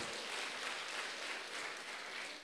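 Audience applauding, a steady even clapping from a hall full of people.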